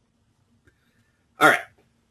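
Near silence, then a man's voice briefly says "all right" near the end.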